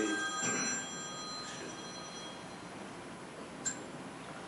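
A ringing, bell-like electronic tone made of several steady high pitches, like a telephone ringing in the room, fading away within the first two or three seconds. A short click comes near the end.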